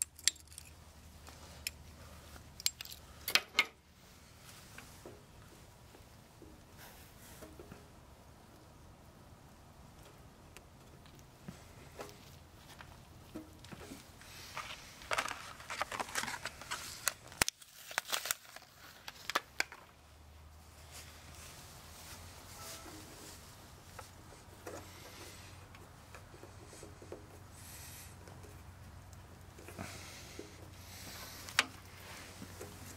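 Hands working a rubber fuel line and its fittings on a small engine: scattered clicks and rubbing, busiest about halfway through.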